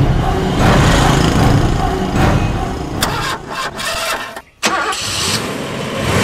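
Car engine running, with a sharp click about three seconds in and the sound briefly dropping almost to silence about a second and a half later.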